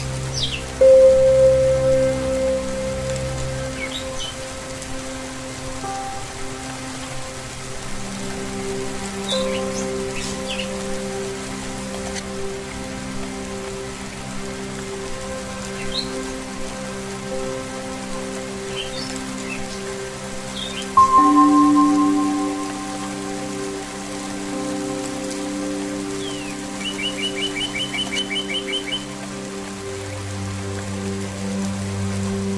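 Rain falling steadily with birds chirping, over soft ambient music of held low tones. A singing bowl is struck twice, about a second in and again about two-thirds of the way through, each time ringing and fading. Near the end a bird gives a rapid trill.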